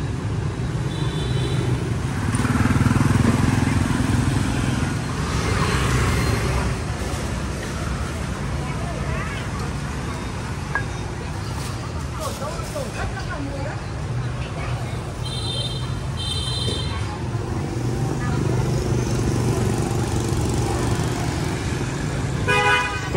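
Busy city street traffic, mostly motor scooters and cars passing, a steady engine and tyre rumble that grows louder a few seconds in. Short high beeps sound about a second in and twice more later on.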